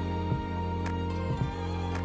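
Background music: slow, sustained chords that change about once a second, with a light percussive tick on a similar beat.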